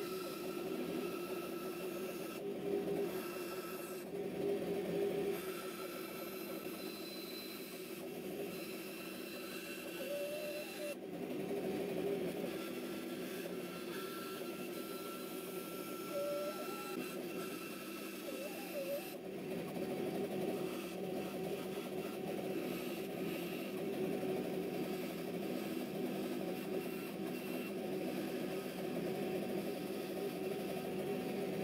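Bandsaw running steadily as its blade cuts through a G10 handle-scale sheet.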